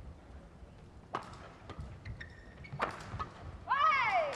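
Badminton rally: three sharp racket strikes on the shuttlecock, about a second in, near the middle and near three seconds, with short shoe squeaks on the court floor. Near the end a loud shout rings out, and crowd noise swells as the rally ends.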